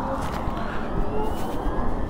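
BMW CE 04 electric scooter accelerating: a faint electric-motor whine rising slowly in pitch over a steady rush of wind and road noise on the rider's camera.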